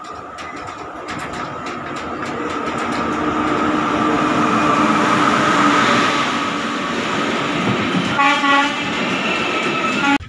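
Electric-locomotive-hauled passenger train pulling into a station platform. Its rumble builds to its loudest about halfway through as the coaches roll past, with a steady high whine throughout and a brief higher-pitched sound about eight seconds in.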